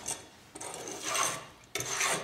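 Metal kitchen utensils rubbing and scraping on a wooden chopping board. The rasping swells about a second in, and a sharper knock comes near the end.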